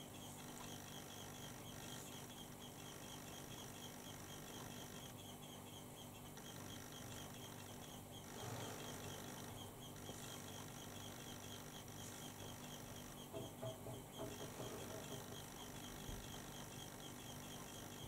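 Quiet room tone with a faint steady high-pitched whine, and soft brushing of a flat-topped makeup brush buffing eyeshadow along the lower lash line, a little louder about halfway through and again a few seconds before the end.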